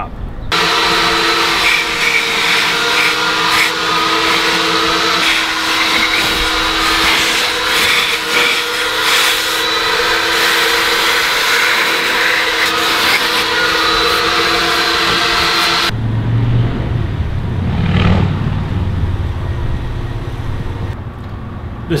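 Car wash vacuum running steadily with a fixed whine, its nozzle drawn over a fabric convertible top. It cuts off sharply about sixteen seconds in, leaving a quieter low rumble.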